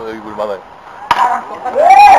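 A single sharp crack of a bat hitting a pitched baseball about a second in, followed by players' loud shouts near the end.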